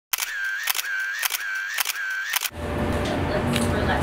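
A camera shutter clicking four times about half a second apart, each click paired with a short electronic beep. It stops about two and a half seconds in and gives way to a steady outdoor background noise.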